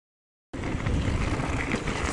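A mountain bike riding a frozen dirt trail, heard from a camera on the bike: wind buffeting the microphone over the rumble and rattle of the tyres on the ground. The sound cuts in abruptly about half a second in.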